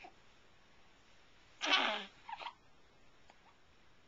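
Newborn baby giving a short raspy fussing grunt about one and a half seconds in, followed by a couple of fainter ones, while sucking on a finger: the fussing of a hungry infant.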